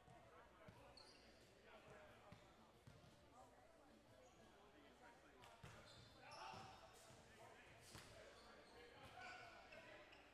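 Faint gym sound before a volleyball match: distant, indistinct voices and scattered thuds of volleyballs being hit and bouncing on the court.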